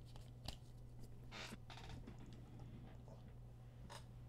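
Near silence over a low steady hum, broken by faint handling of a stack of trading cards: a light click about half a second in, two brief rustles of cards sliding around a second and a half in, and another small click near the end.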